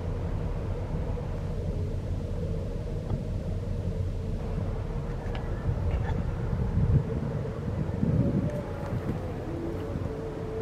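Steady low rumble with a faint constant mechanical hum, the rumble swelling and easing as wind buffets the microphone.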